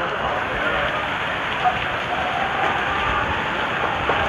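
Heavy rain pouring down in a storm, a steady hiss of the downpour.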